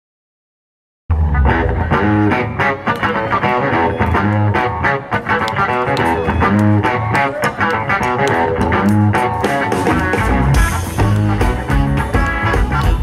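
Silence for about a second, then a live blues band cuts in loud mid-song: electric guitar and bass guitar over a steady drum beat, with saxophone.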